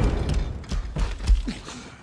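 Film battle-scene sound effects: a low rumble with a few scattered mechanical clicks and clanks, dying away toward the end.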